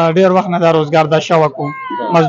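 A man's voice singing in long, steady held notes.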